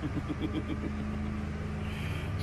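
Steady low engine hum, even in pitch, like a motor idling.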